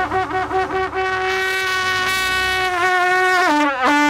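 A long, old medieval-style brass trumpet blown by a player who cannot really play, sounding a fanfare to announce an arrival. It gives a few short, wavering notes, then one long held note that drops to a lower note near the end.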